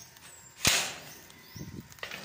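A single sharp crack a little over half a second in, dying away quickly.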